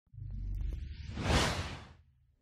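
Logo-animation whoosh sound effect over a low rumble, swelling to a peak about one and a half seconds in and then fading away.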